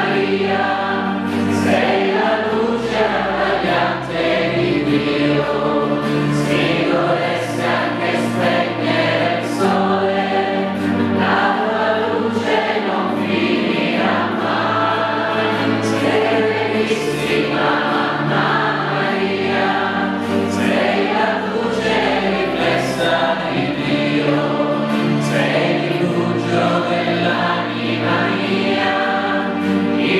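Choir singing a slow hymn over instrumental accompaniment, with held bass notes that change every few seconds.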